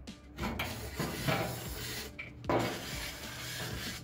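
Rasping, rubbing noise in two long stretches, the second starting about two and a half seconds in, from work on a seized old sewing machine that is being freed with penetrating oil.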